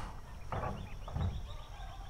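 Faint call of distant fowl, a rapid warbling call heard through the pause in speech.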